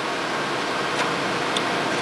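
Steady background hiss with two faint clicks, about a second and a second and a half in, as the plastic power-switch and fuse block is pressed back into the transmitter's metal rear panel.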